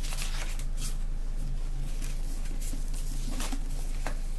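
Pages of a hardback book being flipped and handled, the paper rustling in several short strokes over a steady low hum.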